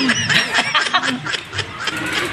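People snickering and chuckling in short bursts of laughter.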